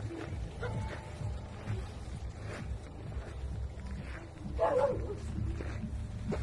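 A stray dog gives one short vocal sound about five seconds in, over a steady low rumble.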